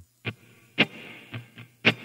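Electric guitar strummed on muted strings to make a scratchy, drum-like rhythm. Sharp scratch strokes land about once a second, with softer strokes in between.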